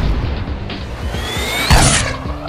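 Cartoon sound effects over background music: a rising whistle as the kicked soccer ball flies, ending in a sharp impact near the end as the ball smashes through the goalkeeper.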